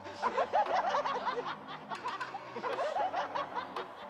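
Several people laughing and snickering together in short, overlapping bursts of mocking laughter.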